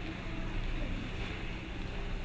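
Steady low hum with a faint, even hiss: background room tone of a church sound system, with no other event.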